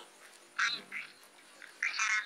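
A man's voice pausing mid-sentence: a short word about half a second in, then a low lull, with speech starting again near the end.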